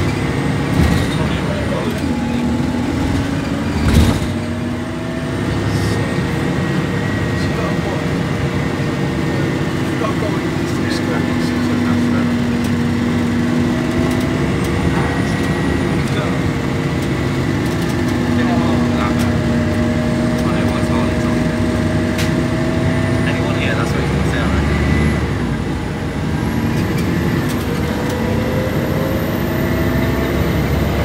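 A Plaxton Centro single-deck bus's diesel engine and drivetrain, heard from inside the passenger cabin while it drives, with a steady drone and whining tones that rise and fall in pitch as it accelerates and changes gear. A sharp knock comes about four seconds in.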